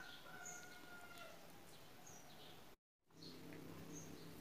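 Near silence: faint background hiss with a few faint, short high chirps, broken by a brief total dropout about three seconds in.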